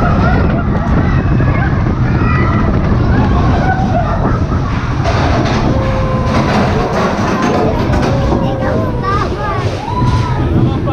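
Mine-train roller coaster cars running along a steel track with a loud, steady rumble, while riders' voices talk and call out over it.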